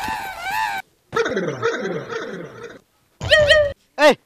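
Several short animal cries with wavering and sliding pitch, broken by abrupt silences.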